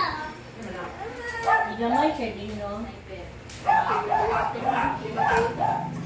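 A dog barking in short runs over people's indistinct chatter: a couple of barks about a second and a half in, then a quick run of about six.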